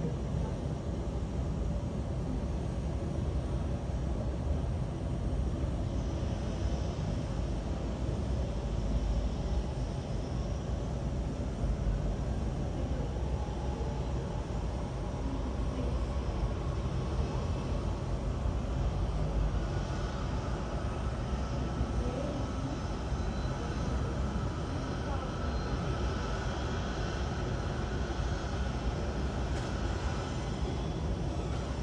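Steady low rumble of an Airbus A320neo and its tow tractor on the apron. A faint high whine comes in about two-thirds of the way through.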